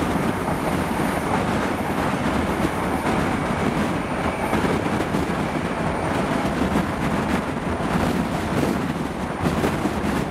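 InterCity 125 (HST) passenger train running along the main line, heard from the carriage window: a steady rumble of wheels on the rails.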